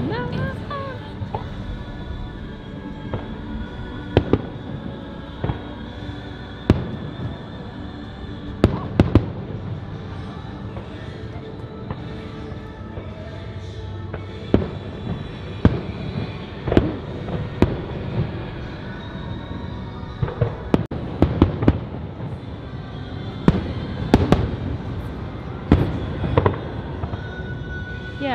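Aerial fireworks shells bursting in irregular bangs and booms, coming thicker in the second half, over background music.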